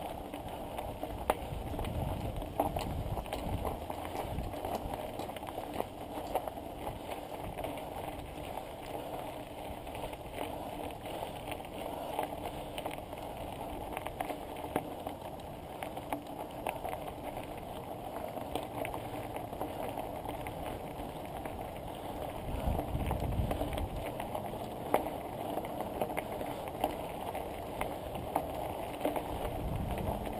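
Bicycle rolling over a loose gravel track: a continuous crunch and patter of tyres on stones, with small rattling clicks from the bike. There are a couple of louder low rumbles near the start and about two-thirds through.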